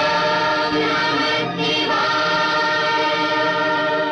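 Devotional title music of voices singing in chorus, holding long, sustained notes, with the chord moving to new notes about halfway through.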